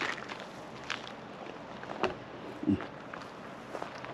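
Footsteps on dry grass and dirt, about one a second, over a faint steady outdoor hiss.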